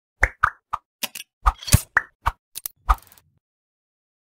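Intro sound effects: a quick run of about a dozen short, sharp pops and clicks over the first three seconds.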